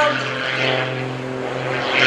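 MX-2 aerobatic airplane's 350-horsepower engine and MT propeller running steadily under power in a vertical climb, a constant drone.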